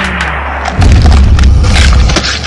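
Edited-in cartoon explosion sound effect: a falling whoosh, then a deep boom a little under a second in that rumbles on.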